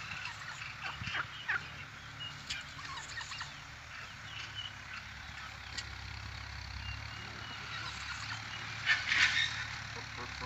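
Domestic turkeys calling: short high notes and scattered clicks, with a louder burst of calling near the end.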